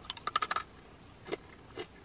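Pita crisps being bitten and chewed: a quick run of crisp crunches in the first half second, then a few single crunches as the chewing slows.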